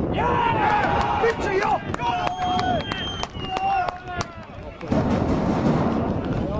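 Men shouting in celebration after a goal, with long, drawn-out yells and a few sharp claps. Near the end, wind buffets the microphone.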